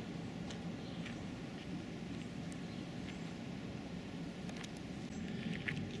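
Outdoor street ambience: a steady low rumble with a few faint clicks.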